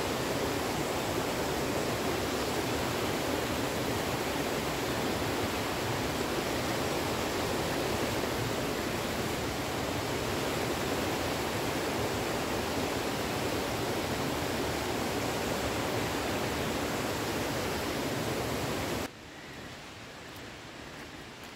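Mountain stream rushing and splashing over boulders and small cascades, a steady full water noise that drops away abruptly near the end.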